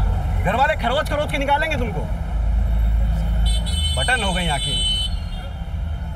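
A car engine and street traffic make a steady low rumble, with voices rising over it twice.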